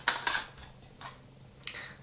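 Small plastic lash-tray cases being handled on a table: a few short clicks and rustles near the start and again near the end as one case is put down and the next picked up.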